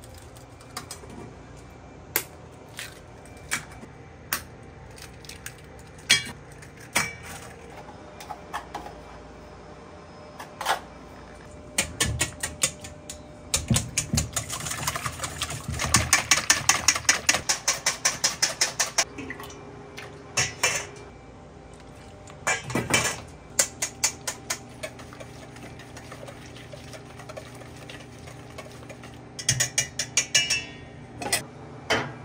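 A wire whisk beating eggs in a stainless steel bowl: a few seconds of fast, even clicking of the whisk against the bowl, about five strikes a second, around the middle. Scattered single clicks and taps of egg shells and utensils against the bowl come before and after it.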